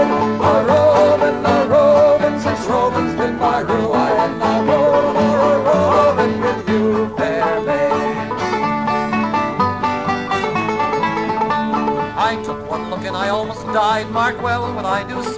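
Instrumental break in a folk song: banjo playing the melody over acoustic guitar accompaniment, with no singing.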